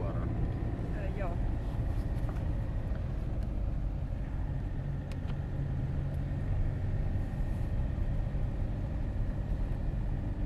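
Steady low rumble of a moving car's engine and tyres on a wet road, heard from inside the cabin.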